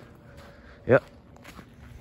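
Faint footsteps on wet gravel, with a single spoken "yep" about a second in.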